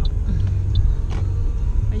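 Steady low rumble of a car being driven, engine and road noise heard from inside the cabin.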